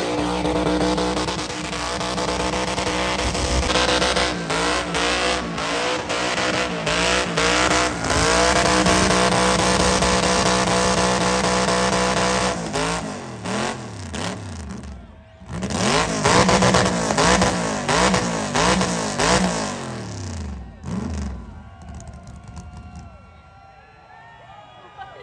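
A GMC pickup's engine is held at high revs for a burnout, fairly steady for about twelve seconds. It is then revved up and down over and over, breaks off briefly around the middle, revs hard again, and dies away near the end.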